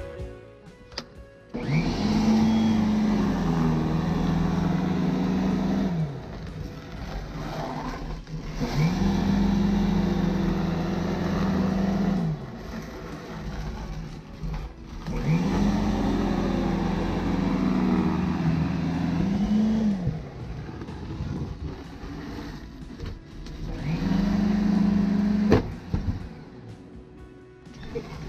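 Ryobi 10-amp 12-inch corded electric snow shovel running in four bursts of a few seconds each, its motor whine rising as it spins up and falling as it winds down between passes. Near the end comes a sharp knock as the running shovel strikes a log, and the motor winds down.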